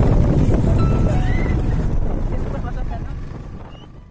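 Wind buffeting the microphone over the rumble of a moving vehicle, fading away through the last seconds.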